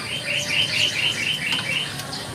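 A bird calling: a rapid, evenly spaced run of about nine short high chirping notes, about five a second, that stops just before the end.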